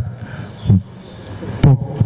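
A man speaking in short broken phrases, with a steady background hiss filling the pauses between words.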